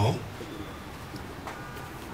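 A bird calling faintly in the background during a lull in a man's speech, mostly near the end.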